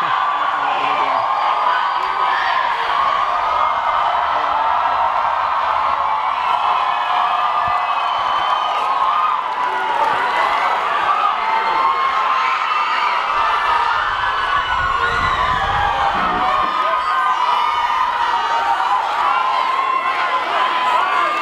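A large concert crowd cheering and shouting, many voices at once, with no break.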